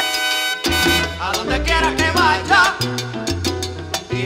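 Salsa band recording, an instrumental passage: a held chord cuts off under a second in, then a wavering melody over a deep bass line and sharp percussion strokes.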